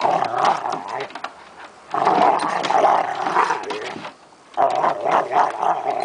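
Two dogs, a flat-coated retriever and a shepherd/retriever/pit mix, growling at each other while play-fighting, with snaps of the jaws. The sound comes in three bouts, with short pauses about two seconds in and about four seconds in.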